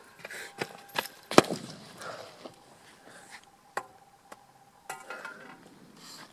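Sharp pops and crackles from a smoking tin can. They come irregularly, the loudest about one and a half seconds in, with more pops near the end.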